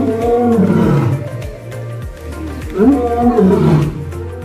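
A big cat roaring twice, each call about a second long, rising and then falling in pitch, over background music with a steady beat.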